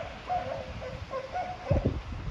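Northern elephant seals calling: a string of short, high squealing cries, then a deeper pulsed grunt near the end.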